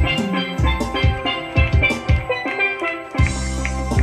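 Live band playing an upbeat instrumental stretch of a song: sustained keyboard chords over a steady drum beat, with no singing.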